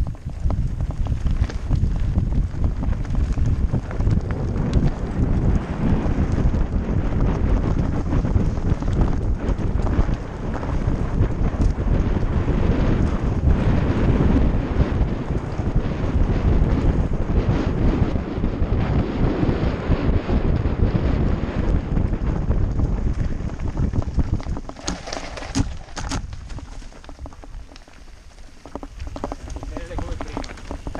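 Wind buffeting the microphone and a mountain bike's tyres and frame rattling over a loose, rocky trail during a fast descent. The noise is heavy and full of small knocks, then eases over the last several seconds as the bike slows.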